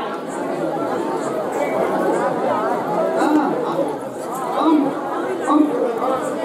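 Crowd chatter: many voices talking at once, with a few voices rising louder than the rest in the second half.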